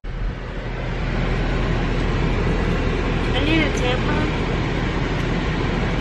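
Steady rumble and hiss of car cabin noise, rising over the first second and then holding even, with a faint voice briefly in the middle.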